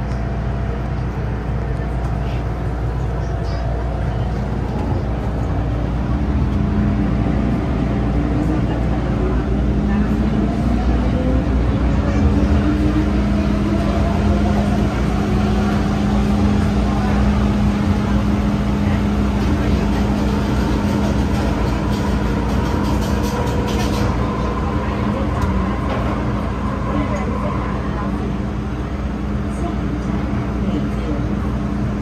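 MTR M-train electric multiple unit pulling away from a station, heard inside the carriage. Its traction motors whine, several tones rising slowly in pitch for about twenty seconds as the train gathers speed, over a steady low hum and the rumble of the wheels on the track.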